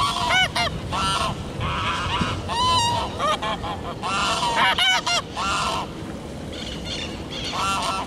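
Domestic geese honking repeatedly, many short calls overlapping in quick succession, busiest through the first six seconds, with one more burst of calls near the end.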